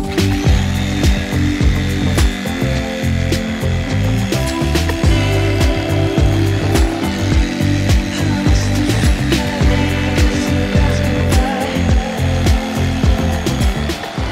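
Background music with a steady beat, over the buzz of an electric carving knife sawing through smoked brisket.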